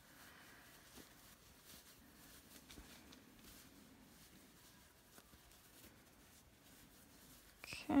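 Faint, soft rustling of polyester fiberfill stuffing being pushed by hand into a crocheted amigurumi head, with a few light ticks.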